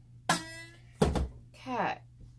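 A heavy loaf of soap knocking against a plastic soap cutter on a steel table, one dull thunk about a second in, with short voice-like sounds before and after it.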